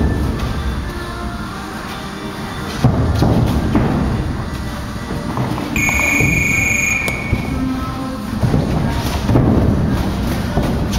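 Music playing over the dull thuds and shuffles of boxers sparring in a ring. About six seconds in, a high steady beep sounds for about a second and a half.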